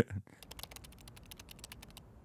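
Computer keyboard typing: a fast, faint run of keystrokes, about a dozen a second, as a command is typed into a terminal.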